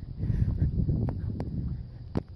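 Low, uneven rumble of wind on the microphone, with a few faint clicks about a second in.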